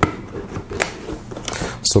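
A cardboard motherboard box being closed and handled, with a few sharp taps and scrapes of cardboard.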